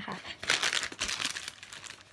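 Plastic packaging crinkling and rustling as it is handled, for about a second.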